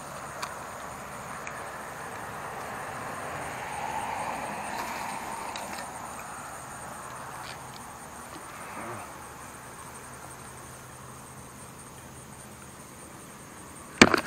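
Steady high-pitched insect drone over open-air background noise, with a broad rushing swell that builds a few seconds in and fades away again.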